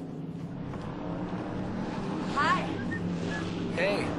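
A car engine running steadily at low revs, with a quick run of rising chirps about halfway through and a short voice-like sound near the end.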